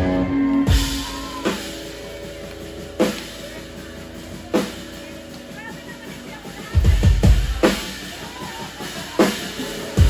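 Drum kit struck in scattered single hits, with a quicker run of hits about seven seconds in, over the faint hum and ring of amplified guitar and bass. A held chord cuts off in the first second, so this is the loose playing between songs at a live rock set.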